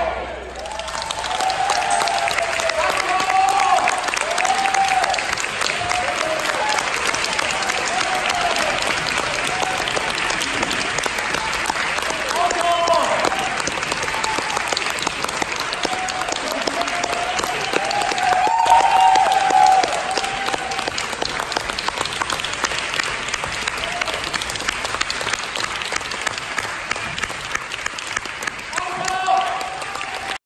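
Audience applauding steadily right after the final chord of a wind-band piece, with voices calling out and cheering over the clapping now and then, loudest a little past halfway.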